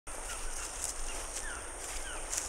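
Tropical forest ambience: a steady high-pitched insect drone, with short, falling bird chirps scattered over it.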